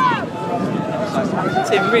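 Several people's voices talking and calling over one another, overlapping chatter among onlookers, with a man starting to say "really" at the very end.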